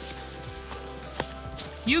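Quiet background music with steady held tones, with a couple of soft taps from running footfalls on the trail; a voice begins to cheer right at the end.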